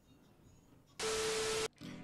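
A short burst of TV-style static with a steady tone through it, starting about a second in and cutting off sharply after under a second: an editing transition sound effect.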